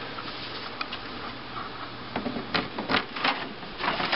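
Mechanical clicking and clattering from an RCA SelectaVision SFT100 CED videodisc player, starting about two seconds in as a run of irregular sharp clicks over a steady hiss.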